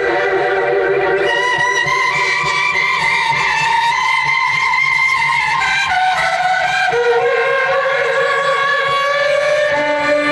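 Solo violin bowed in long sustained notes, often two or more pitches sounding together, moving slowly to new pitches every few seconds.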